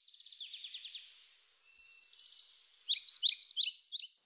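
Birds singing: a rapid run of high, repeated chirps, then from about three seconds in a string of louder, sharp downward-slurred chirps.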